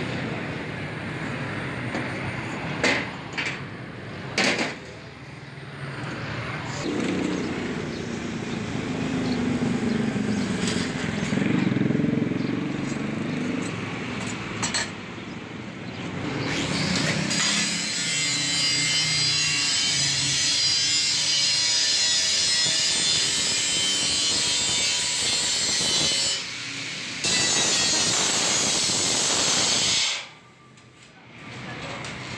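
An angle grinder grinding the edge of a steel plate: a steady, high-pitched grinding noise over the second half, with a short break near the end. Before it comes a rougher, varying noise with a few sharp knocks as the steel is worked.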